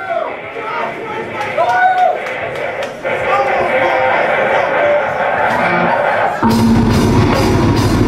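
Live heavy metal band starting a song: shouting and stage noise with light high ticks, then about six and a half seconds in the full band comes in loud, with a heavy drum kit, distorted guitars and bass.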